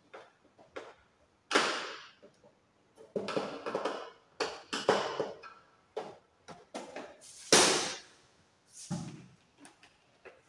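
Plastic cover of a consumer unit being handled and fitted onto its box: a run of short plastic knocks, scrapes and clatters, with two louder ones, one early and one late.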